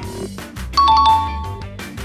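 A two-note ding-dong chime sound effect, high note then low note, sounding for about a second from just under a second in, over steady background music.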